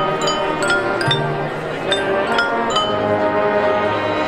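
Marching band playing, with sustained wind chords under a run of short, bell-like struck notes from the mallet percussion.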